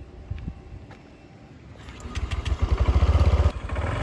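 Honda Click scooter's single-cylinder four-stroke engine starting about halfway through and running with a fast low pulsing that grows louder, after a few light clicks.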